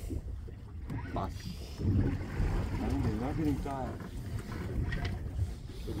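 Low, steady rumble of wind and sea on a small boat at sea, with a man's brief wavering vocal sound about halfway through.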